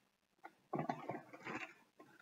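Faint, irregular rustling and crinkling of plastic as hands rummage in a clear vinyl backpack and pull out a small plastic bag of plastic links. The rustling starts a little under a second in, after a brief silence.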